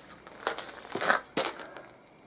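Cloth rubbing and brushing right against the camera's microphone: a few brief, scratchy rustles of handling noise as a fleece sleeve passes over it.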